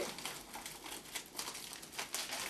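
Foil-lined tea pouch crinkling in the hands with irregular crackles as it is handled and opened to pour out loose tea.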